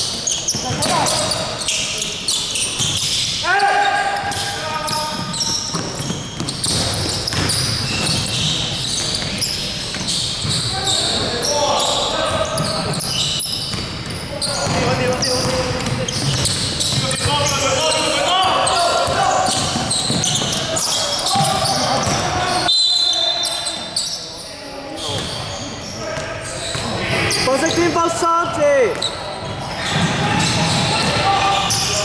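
A basketball bouncing on a hardwood gym floor, with players' shouted calls, all echoing in a large sports hall.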